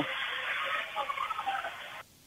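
Gymnasium crowd and court noise picked up by the broadcast microphone during a stoppage, sounding thin as over a phone line, then cutting off abruptly at the end.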